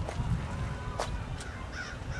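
Outdoor ambience: a bird calls near the end over a low rumble, with a single sharp click about a second in.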